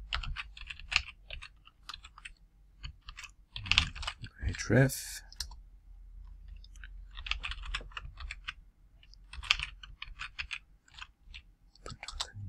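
Typing on a computer keyboard: quick runs of keystrokes in several bursts, with short pauses between them.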